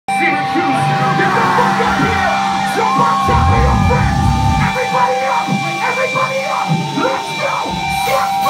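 Live metalcore band playing loud electric guitar, with yelling and singing, heard from within the crowd at a small club show.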